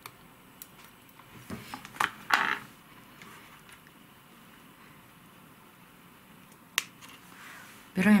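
Small clicks and a brief rustle from tweezers and fingers working among orchid roots, bunched about two seconds in, then one sharp click near the end.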